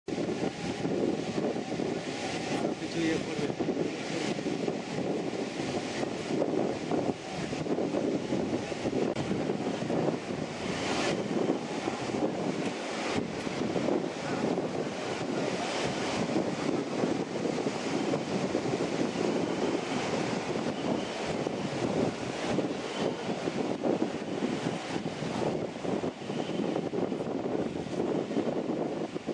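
Outdoor ambience: wind buffeting the microphone over a steady murmur of a crowd's voices.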